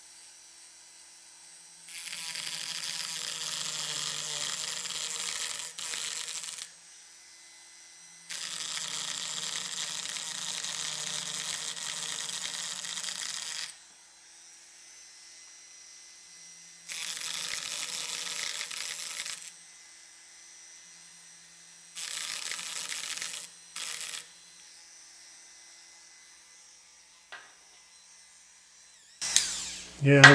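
Proxxon reciprocating power carver cutting into basswood in five bursts of a few seconds each, the blade chattering only while pressed into the wood. Its motor runs with a fainter steady hum between the cuts.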